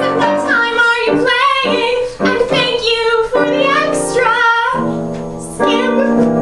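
A woman singing a song into a microphone with piano accompaniment, holding notes with vibrato over sustained piano chords.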